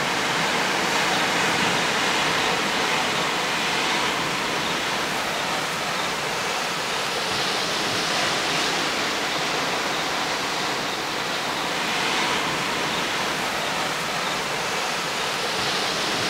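Sea surf breaking against coastal rocks: a steady rushing wash of water noise that swells gently every few seconds.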